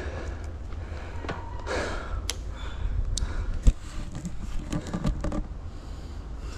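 Wind rumbling on the microphone, with scattered crunches and knocks and one sharp thump about three and a half seconds in.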